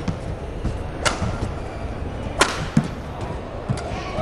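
Badminton racket strikes on a shuttlecock during a rally: two sharp cracks about a second and a half apart, with softer thuds of footwork on the court over the steady noise of an arena crowd.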